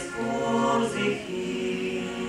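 Male vocal quartet singing in close harmony to accordion accompaniment; a little after a second in they settle on a held chord that slowly fades.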